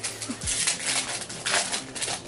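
A foil Pokémon booster pack wrapper being torn open and crinkled, a run of dense crackling rustles that starts about half a second in.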